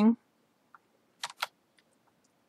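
Two quick, sharp computer mouse clicks a fifth of a second apart, about a second and a quarter in, with a fainter click shortly before.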